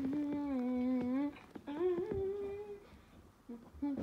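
A person humming two held notes: a low one lasting just over a second that dips slightly, then a higher one that rises a little, with a few faint clicks in between.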